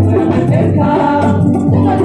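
A mixed group of men and women singing a song together into handheld microphones.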